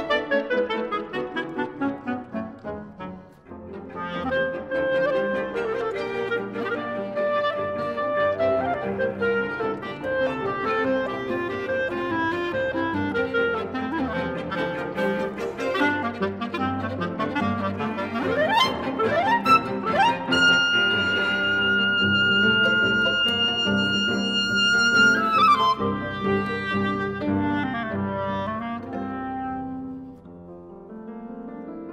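Chamber music for clarinet, violin, cello and piano: a busy, lively passage with a brief dip in loudness a few seconds in. Rising glides sweep upward about two-thirds of the way through, then a high note is held for about five seconds before falling away.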